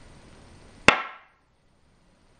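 A go stone placed sharply onto a wooden go board: one crisp click about a second in, with a short ringing tail.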